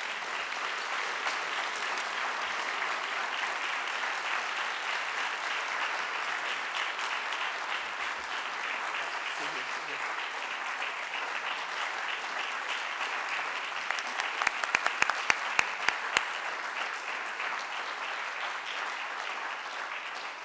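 Audience applauding steadily, with a run of sharp, louder claps close to the microphone about fourteen to sixteen seconds in.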